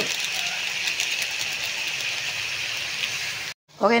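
Chicken pieces frying in hot oil in a wok: a steady sizzling hiss with fine crackles, which cuts off abruptly near the end.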